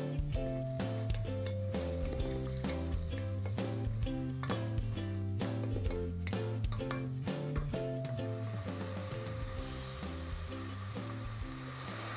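Background music with a steady beat and a stepping bass line. From about two-thirds of the way in, the beat drops away and diced carrots can be heard sizzling as they fry in hot oil.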